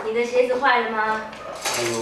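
Chopsticks and dishes clacking on a dining table as it is set, a sharp clack at the start and another near the end, under a woman's speaking voice.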